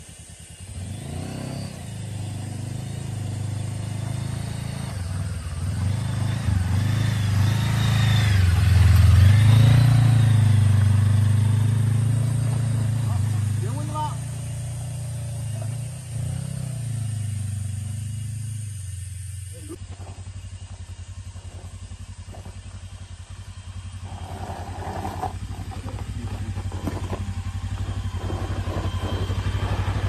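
Motorcycle engine working on a steep dirt hill climb, swelling to its loudest about nine seconds in and then easing off. A second engine then runs steadily and grows louder toward the end as it comes closer.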